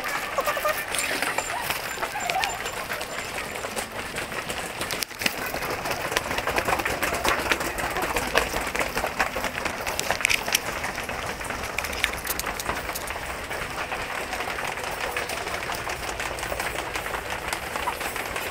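Busy train-station rush-hour ambience: many commuters' footsteps and a murmur of voices. A quick run of high beeps sounds in the first couple of seconds.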